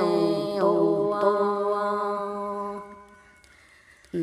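Singing in the Red Dao language, in the hát lượn style: one long held note that dips in pitch about half a second in and fades out about three seconds in, leaving a short near-silent gap at the end.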